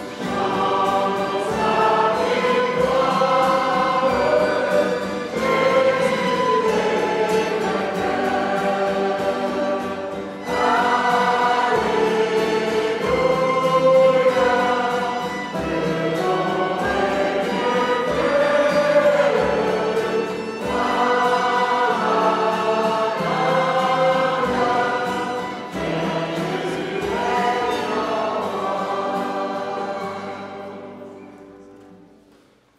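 A congregation singing a French worship song in unison with musical accompaniment, in phrases a few seconds long. The music dies away near the end.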